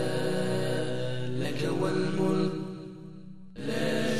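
Slow religious vocal chant with long held notes. It fades down near the end and then comes back abruptly.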